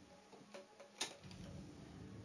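Quiet room tone with one sharp click about a second in.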